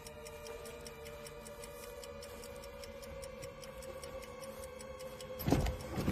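Film score: a quiet sustained drone of held tones with a faint, steady clock-like ticking under it. Near the end a sudden louder noise breaks in.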